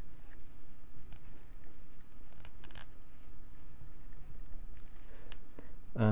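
Faint handling sounds, soft rubbing and a few small clicks, as fingers work a tight sleeve of stripped wire insulation onto a multimeter probe's metal tip, over a steady low background rumble.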